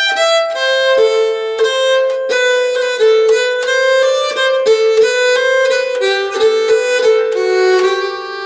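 Nyckelharpa bowed slowly, a run of separate held notes stepping up and down in pitch, each note ringing on into the next.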